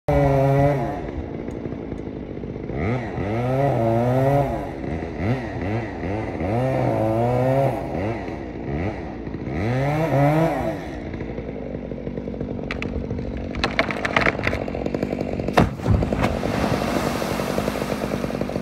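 Chainsaw cutting through a standing dead pine pole, revving up and down several times during the first half. It keeps running more steadily, then a run of sharp cracks and one loud crack come as the pole breaks and falls, followed near the end by the splash of the pole landing in the lake.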